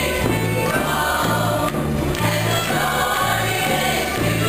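A live band playing, with a chorus of voices singing together over a steady bass line of about two notes a second.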